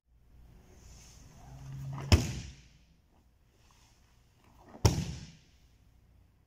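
Two backward break falls onto a jiu-jitsu mat: each ends in a sharp, loud slap as the arms hit the mat palm down, the second about three seconds after the first. A soft rustle of the gi swells before each slap as he sits down and rolls back.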